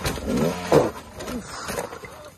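Dirt bike engine revving unevenly as the bike flips backward off a rock ledge, with one sharp crash about three quarters of a second in as the bike hits the rocks.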